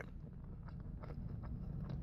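Faint chewing of a mouthful of fried chicken tender, with small mouth clicks now and then over a low steady hum.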